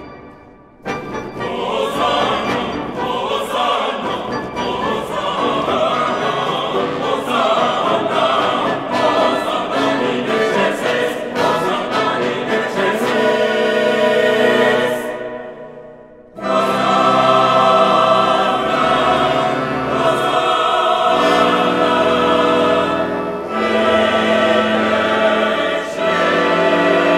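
Choir singing. A dense, busy passage with sharp percussive strikes runs through the first half, breaks off briefly past the middle, then gives way to long held chords.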